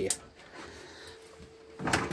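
Metal drop-down grill door of a Thetford cooker being pulled open near the end, after a quiet stretch with a faint steady hum.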